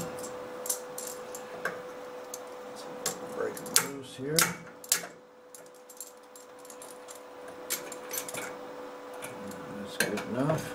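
Scattered light metallic clicks and clinks from locking pliers (vise grips) being handled on a small steel bracket, which have just been accidentally welded to the metal. A steady faint hum runs underneath.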